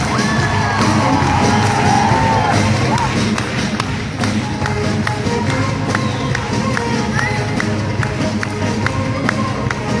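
Live band music with a crowd cheering and whooping at a concert; in the second half, sharp regular beats come about twice a second.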